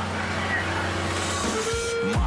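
Diesel engine of a grab excavator used for demolition, running with a steady low drone. About one and a half seconds in, electronic music comes in with a held tone.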